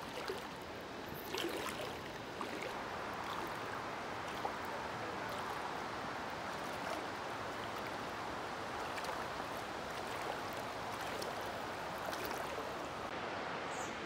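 Shallow river water flowing steadily, an even rush of current.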